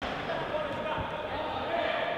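A futsal ball thudding on a wooden sports-hall court, with one sharp thud about a second in, while indistinct voices carry through the hall.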